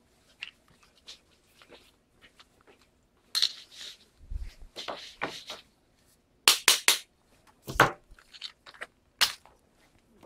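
Metal clicks, rattles and knocks of a door knob lockset's parts being handled and fitted by hand, faint ticks at first, then louder clicks with a couple of dull thumps in the second half.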